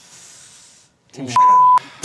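A TV censor bleep: one steady, high beep under half a second long, dropped in right after the word "Team" to blank out a swear word in the team's name.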